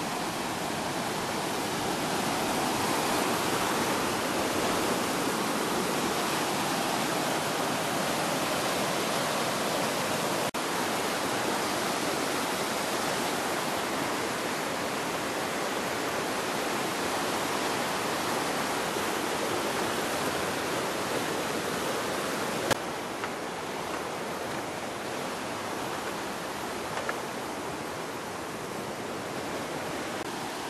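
Fast mountain river rushing over rocks and through rapids in a steady, unbroken wash of water noise. There is a single sharp click about three-quarters of the way through.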